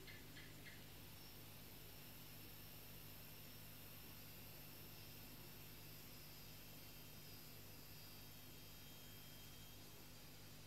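Near silence: room tone with a faint steady hum and hiss.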